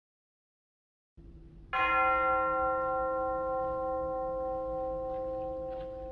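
A single bell struck once, about a second and a half in, its tone ringing on and slowly fading over a low hum.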